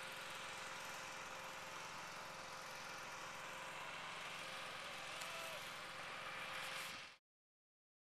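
Steady, low outdoor background noise, an even hiss with no distinct events, cutting off abruptly to silence about seven seconds in.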